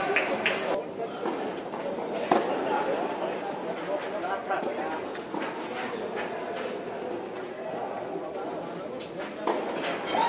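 Tennis ball struck by rackets during a doubles rally: a few sharp hits a few seconds apart, the loudest about two seconds in, over the murmur of people talking in the background.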